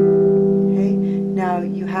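E minor chord on a lever harp, plucked just before and ringing on as it slowly fades. A voice starts talking over its tail about halfway through.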